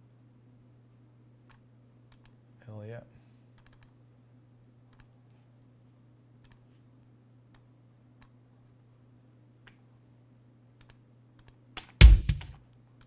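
Scattered computer mouse and keyboard clicks, single and in quick pairs, over a steady low hum. A loud low drum hit begins right at the very end, a kick drum sample starting to play back.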